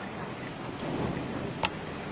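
Steady high-pitched trill or whine in the background, with a single sharp click near the end.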